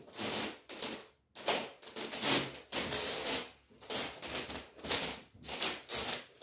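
Irregular rustling and scuffing, about two or three sounds a second, from a person in a stiff brocade costume and leather boots moving and turning on bare wooden floorboards.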